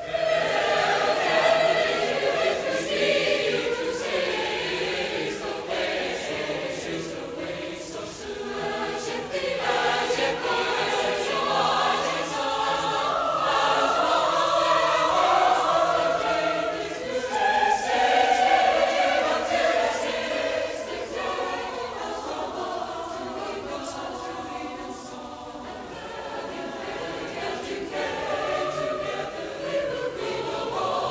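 A mixed choir of men's and women's voices singing together, coming in at the very start after a brief quiet, with long held notes and a softer passage in the last third.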